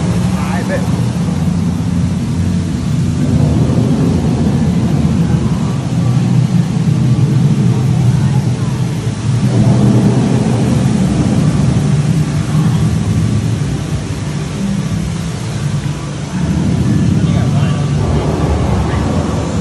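Steady low rumble of a moving amusement-ride vehicle, swelling and easing a few times, with indistinct voices mixed in.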